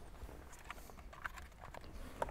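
Faint, scattered light clicks and taps as a plastic dashboard HVAC control assembly is handled.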